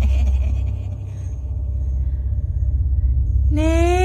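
A deep, steady rumbling drone used as a horror sound-effect bed. A cackling laugh trails off at the start, and about three and a half seconds in a voice begins a long, slightly rising wailing note.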